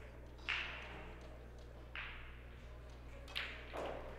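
Quiet hall room tone with a steady low hum, broken by two sharp clicks about a second and a half apart and two softer knocks near the end, each trailing off briefly.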